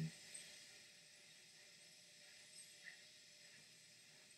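Near silence: a faint steady hiss in a pause of the broadcast audio.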